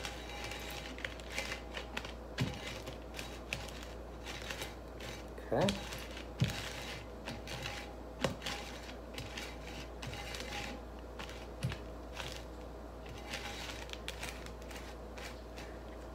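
A glass rim being pressed and twisted into Tajín chili-lime seasoning on a plate: soft gritty scraping with scattered light clicks, under a steady low room hum.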